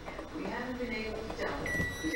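Emerson microwave oven giving one short, high electronic beep near the end, as its power cord is pushed back into the wall outlet: the power-on signal.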